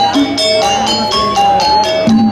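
Balinese gamelan gong kebyar playing: rapid, evenly paced strokes on bronze metallophones, with pitched ringing notes over a steady low gong hum.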